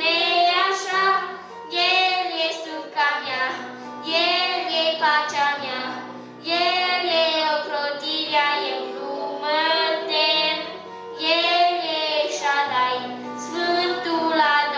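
A child singing a song into a microphone, in phrases with short breaths between them, accompanied by an electronic keyboard holding sustained chords.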